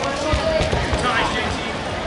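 Spectators and coaches calling out across a large gym hall, several voices overlapping, with a few low thuds about half a second to a second in.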